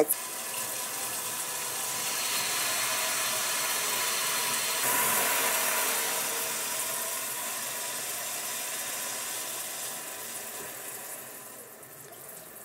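A stream of water running from an electric instant water heater tap into a stainless steel sink. It grows louder toward the middle, then fades again toward the end.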